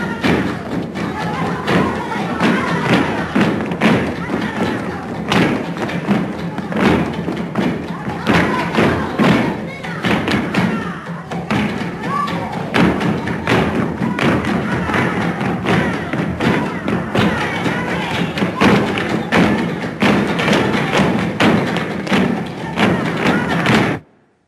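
Flamenco dancers stamping their heels and clapping in a dense, driving run of sharp knocks, with women's voices shouting over it. It cuts off suddenly at the end.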